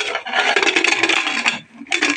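Pressure cooker lid being twisted shut and locked onto the pot, metal scraping and rubbing on metal for about a second and a half, then a second short scrape near the end.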